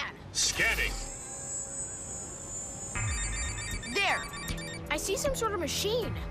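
Electronic ringing alert from a cartoon wrist communicator: a high steady tone, then a rapid run of short beeps, over background music, with short gliding vocal exclamations around it.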